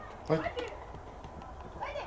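A short, high exclamation, "oj!", about a third of a second in, with another brief rising shout near the end, over faint open-air background noise.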